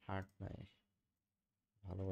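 Speech only: a man says a short word, pauses for about a second, and starts speaking again near the end.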